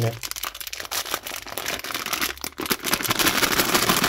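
Plastic-film sweet bag crinkling and crackling as hands pull and twist its sealed top to open it. The crinkling grows louder and denser near the end.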